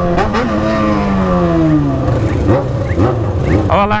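Motorcycle engines running in a group ride, one engine's pitch dropping steadily over the first two and a half seconds as its revs fall, over a constant rumble of road and wind noise.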